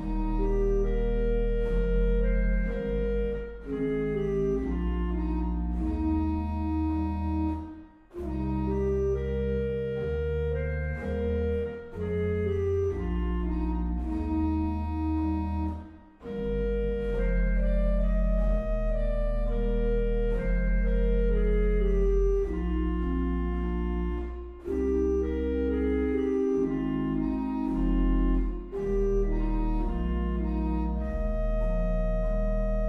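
Sampled Trost pipe organ of Waltershausen played through Hauptwerk: sustained chords and moving lines over a deep pedal bass, with short breaks between phrases about eight and sixteen seconds in.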